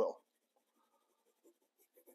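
Faint scratching of a soft 9B graphite pencil stroking across drawing paper while shading.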